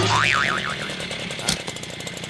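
A comic 'boing' sound effect whose pitch wobbles up and down a few times and dies away within about half a second. A single click comes about a second and a half in.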